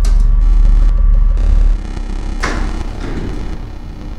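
Electronic synthesizer intro: a deep sub-bass drone that drops in level about 1.7 s in, then a sharp noisy hit about 2.4 s in that fades away.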